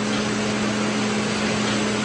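A machine running steadily: an even hiss with a low, constant hum under it.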